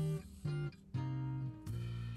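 Background music on acoustic guitar: a few plucked notes, each ringing on.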